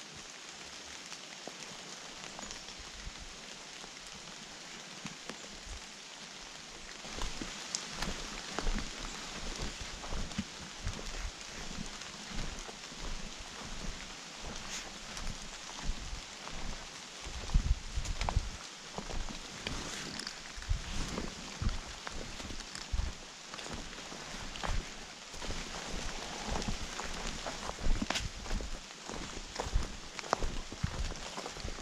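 Footsteps through wet fallen leaves on a forest trail: a steady outdoor hiss at first, then from about seven seconds on uneven thumping steps with leaf rustle and small snaps.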